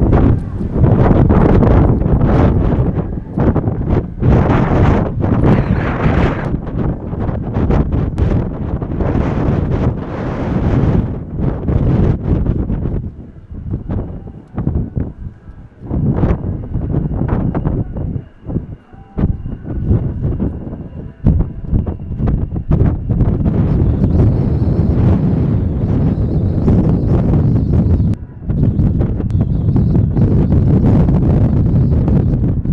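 Heavy, gusty wind buffeting on the microphone is the loudest sound throughout. In a quieter lull around the middle, a faint steady high whine comes through, from the turbofan engines of an F-15J fighter taxiing at idle.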